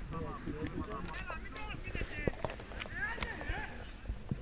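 Players' voices shouting across a football pitch, heard at a distance, with a few scattered sharp knocks; two louder calls come about a second in and again about three seconds in.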